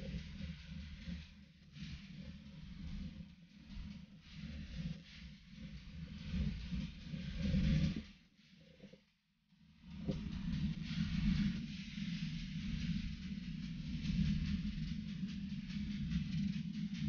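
Wind rumbling unevenly on the microphone of a camera mounted on a road bike climbing hard, with a fainter hiss above it. The sound cuts out for about two seconds around the middle, then comes back.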